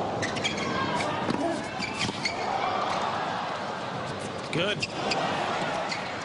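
Tennis rally on a hard court: a series of sharp racket strikes and ball bounces at irregular spacing, over the steady murmur of a large stadium crowd.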